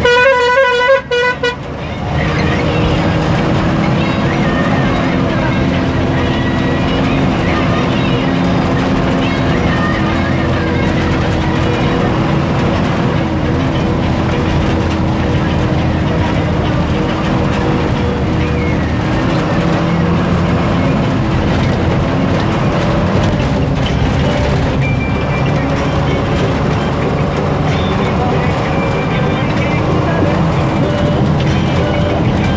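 A vehicle horn honks loudly for about a second and a half at the start, with a brief break about a second in. Then a vehicle engine runs steadily while driving along a dirt road.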